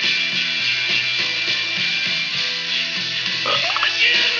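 Background music with guitar, running steadily under the pause in narration.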